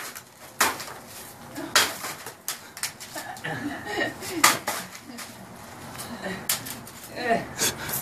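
A hanging papier-mâché piñata being struck repeatedly, about half a dozen sharp whacks at uneven intervals, with laughter between the hits.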